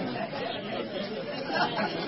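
Several voices talking over one another: indistinct crowd chatter.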